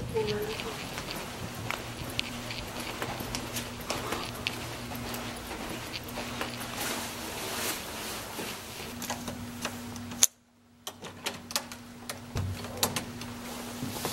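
Handling noise from people carrying jackets and bags: rustling and small clicks, with footsteps, over a steady low hum. About ten seconds in there is a sharp click and the sound drops out for half a second, then a few more clicks follow.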